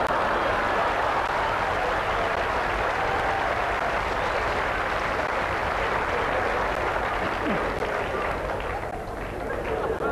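A live audience laughing and applauding together, dying down near the end.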